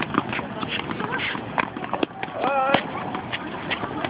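Several tennis balls being bounced over and over on racket strings at once, an irregular patter of quick strikes. A child's voice calls out briefly in the middle.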